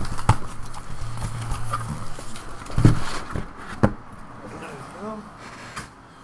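Cardboard case of shrink-wrapped card boxes being handled and unpacked, with a few knocks as boxes are set down on the table, the loudest about three seconds in.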